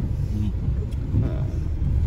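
Steady low rumble of car cabin noise inside a car, with a faint voice in the background.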